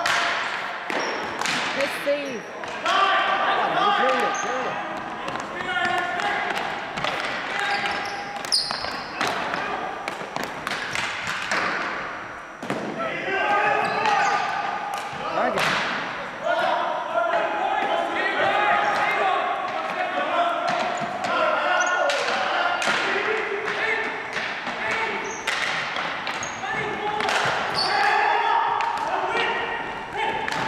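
Ball hockey play on a gym's hardwood floor: frequent sharp clacks of sticks and the plastic ball hitting the floor and walls, with players' voices calling out, all echoing in the large hall.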